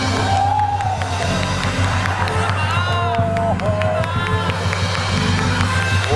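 Live gamelan accompaniment with steady drum strokes, under audience cheering and a few short vocal exclamations.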